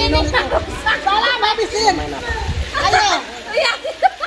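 Several women's voices talking and calling out over each other in a lively group.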